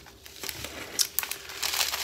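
Clear plastic packaging of bagged diamond-painting drills crinkling as it is handled, with a few sharp crackles about a second in.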